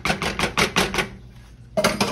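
A wooden spoon knocking quickly against the side of an enamelled pot of gravy as it is stirred, a run of sharp clacks about seven a second that stops about a second in.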